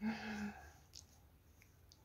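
A short, faint vocal sound held on one steady low pitch for about half a second, like a hummed 'mm' or a sigh. Two faint clicks follow later.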